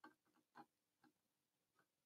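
Near silence, with a few very faint, irregular clicks.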